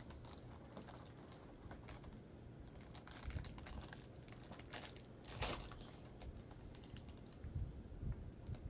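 Faint scattered clicks and taps of fingers working at the cardboard doors of an advent calendar. The loudest click comes a little past the middle.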